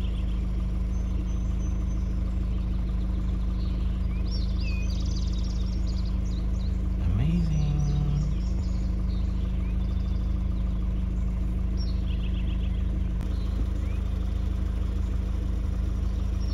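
A vehicle engine idling steadily, with a brief rise in pitch about seven seconds in. Birds chirp now and then over it.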